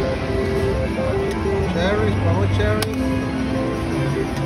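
A slot machine playing electronic jingle tones over casino din. There is a short rising pitched sweep about two seconds in and a sharp click just before three seconds.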